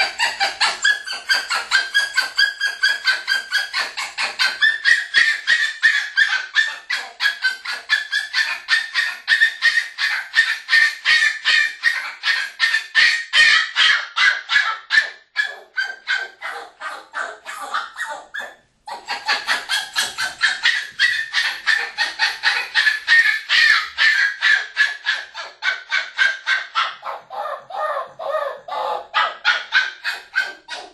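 A three-month-old Parson Russell terrier puppy, left alone, yelping in a fast, unbroken series of high-pitched calls, about three or four a second, with a short break a little past halfway.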